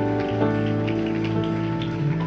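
Worship-band backing music: sustained keyboard chords held steady, with faint light ticks high above them.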